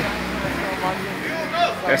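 Outdoor street background with a steady hiss and faint voices of people nearby, a low rumble in the first half second, and a man starting to speak right at the end.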